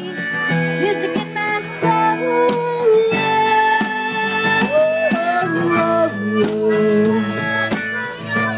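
Harmonica solo played into a microphone over a strummed acoustic guitar, with held notes and bent pitches, in an instrumental break between sung verses of a country song.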